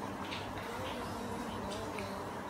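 Wooden chopsticks stirring noodles in a paper bowl: a few soft clicks and scrapes, over a low steady background.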